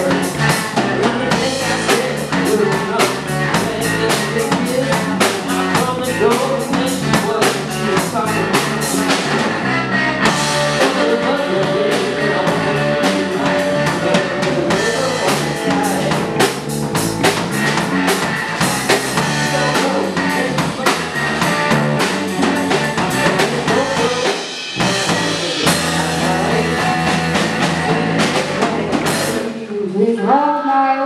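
Live rock band playing loudly: electric guitar, bass guitar and a Ludwig drum kit, with a brief drop about three-quarters of the way through.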